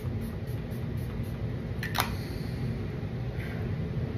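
A pump-action facial mist spray bottle is pressed with a sharp click about halfway through, followed by a brief faint hiss of spray. A steady low room hum runs underneath.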